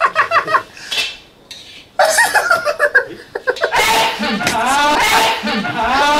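A man laughing hard in quick repeated bursts, dropping off for about a second, then breaking out again into a long, loud, wavering laugh in the last couple of seconds.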